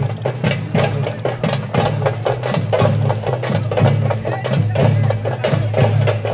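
Percussion music for kavadi dancing: drums keep up a fast, even beat of about three to four strokes a second, with other pitched sound wavering over it.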